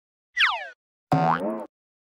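Cartoon-style sound effects of the iQIYI studio logo intro: a short falling whistle-like glide, then about a second in a second, wobbling pitched sound lasting about half a second, as the letter 'i' bounces in.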